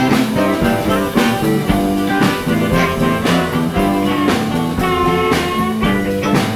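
Live blues band playing an instrumental passage, with guitar over a steady drum beat.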